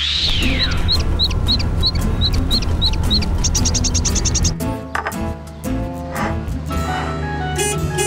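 A swoosh sweeping up and down in pitch, then a cartoon bird's short high chirps, about three a second, ending in a quick chattering flurry about four seconds in, all over background music that carries on alone afterwards.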